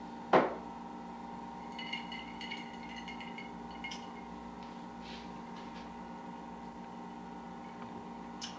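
Glassware being handled on a countertop. A sharp knock just after the start, as a glass is set down, is the loudest sound. A cluster of light glass clinks with a brief ring follows about two seconds in, then a few small taps, over a steady background hum.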